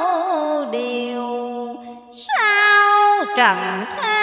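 A woman's voice chanting Hòa Hảo Buddhist scripture verse in a slow, sung style, drawing out long notes that waver and glide. It breaks briefly about halfway through, then takes up a new high note that slides down near the end.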